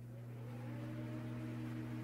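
Logo sting sound effect: a steady low hum with a faint tone gliding slowly upward, swelling gradually as it builds.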